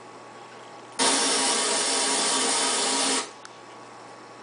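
A loud burst of hiss with a faint hum in it, lasting about two seconds and starting and stopping abruptly.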